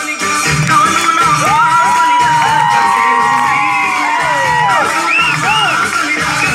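Dance music with a steady drum beat, with a crowd of children cheering and whooping over it from about a second and a half in until near the end, many voices rising and falling in pitch.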